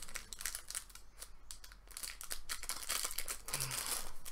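Plastic packaging crinkling and rustling in irregular crackles as it is handled and unwrapped.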